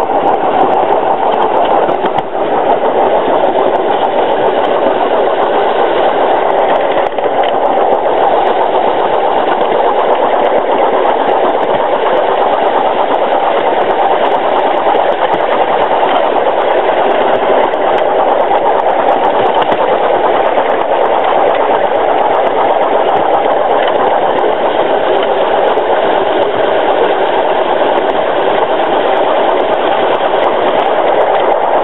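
A 7¼-inch gauge live-steam Crampton locomotive running steadily along the track, its exhaust beats and running-gear clatter heard close up from on board, a dense mechanical noise.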